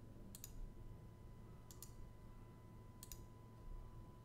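Faint computer mouse clicks in three quick pairs, about a second or more apart, as drawings are removed from a chart through a right-click menu. A faint steady high tone runs underneath.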